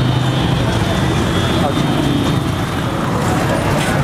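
Busy outdoor market din: background voices talking over a steady low rumble of motor traffic.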